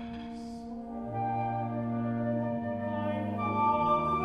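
Small mixed ensemble of woodwinds, brass and strings holding long, overlapping notes in a slow chord cluster. A low note comes in about a second in, and the sound grows a little louder near the end.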